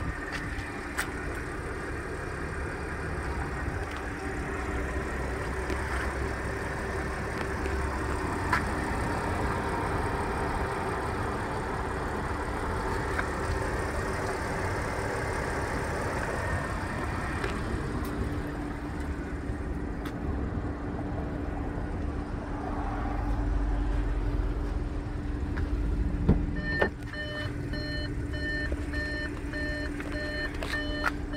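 Steady outdoor hum with low wind rumble on the microphone. Near the end a click as the Audi Q5's driver's door is opened, then a steady, evenly repeating electronic warning chime.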